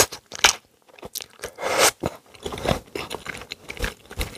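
Close-miked eating of cheese ramen: noodles slurped in and chewed in irregular wet bursts with small mouth clicks, the longest slurp about two seconds in.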